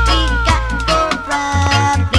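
Roots reggae music with a heavy bass line, under a long falling glide in pitch that slides down over the first second or so.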